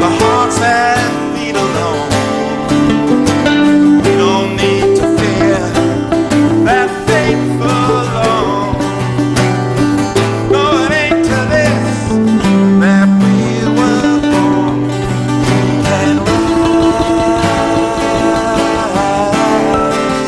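Live folk band playing an instrumental break: acoustic guitars strumming chords over a moving bass line and percussion, while a lead instrument plays a melody with bending, sliding notes.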